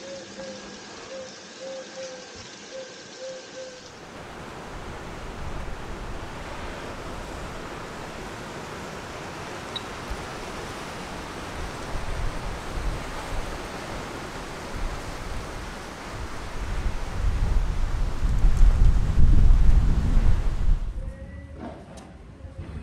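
Wind rushing over a handheld phone microphone outdoors, with low buffeting gusts that grow strongest near the end and then drop away. In the first few seconds a faint short chirp repeats about twice a second.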